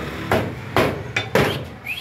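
Meat cleaver chopping through chicken onto a round wooden chopping block: four heavy chops, the last two in quick succession. A short rising chirp comes near the end.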